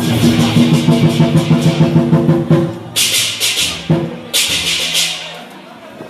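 Lion dance percussion: a drum beaten in a rapid steady roll under ringing gong-like tones, then two cymbal crashes about a second and a half apart, after which the playing dies down.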